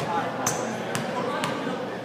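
Basketball dribbled on a hardwood gym floor, a few bounces about two a second, with voices chattering in the background.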